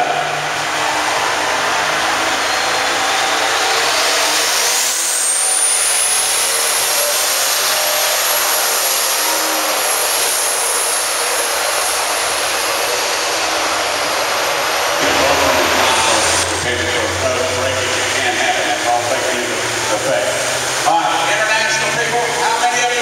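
Turbocharged diesel pulling tractor under full load down the track, its turbo whine rising steeply a few seconds in and holding high before cutting off suddenly about 16 seconds in as the run ends.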